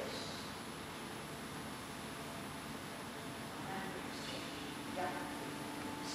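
Steady background hiss with faint, indistinct voices, and a faint low hum coming in during the second half.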